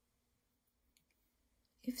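Near silence with one faint, brief click about a second in, then a woman's voice begins near the end.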